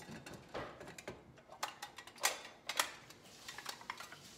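Small decorative objects being handled and set down on a wooden hutch shelf, giving scattered light clicks and knocks, the loudest a little over two seconds in.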